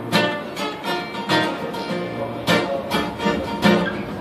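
Two acoustic guitars strumming a blues accompaniment together, with strong strokes about a second and a half in and again about two and a half seconds in.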